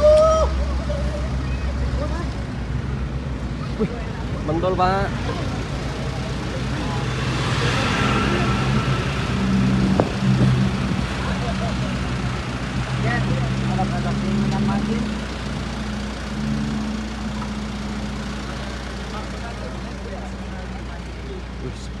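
Road traffic on a bridge: a vehicle engine hums steadily from about a third of the way in and fades away after the middle, over a constant low rumble, with brief scattered voices.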